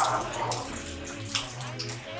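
Plastic spatula scraping and knocking against a metal cooking pan as rice is stirred and turned, a few short strokes with a rushing noise between them.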